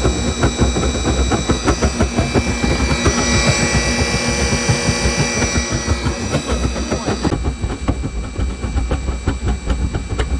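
Waste-oil-fired radiant tube burner running with its combustion blower: the flame pops in rapid irregular pulses over a low rumble, with a steady whine from the blower. The burner is still cold and warming up, so the oil nozzle is not yet burning properly.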